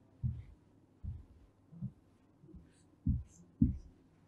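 A marker drawing curves on a whiteboard: about six soft, low knocks as the board takes the strokes, with a few faint squeaks of the marker tip in the second half.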